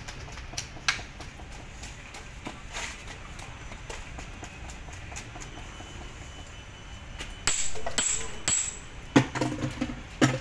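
Sand mix being scooped and packed into plastic dumbbell moulds: scattered scrapes, taps and sharp ticks, then a cluster of louder gritty, rattling scrapes about three-quarters of the way through.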